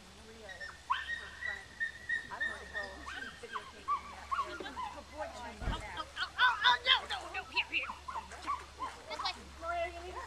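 A small dog barking in short, high yaps, many in quick succession, loudest about six to seven seconds in. A steady high tone runs for a couple of seconds before the barking starts.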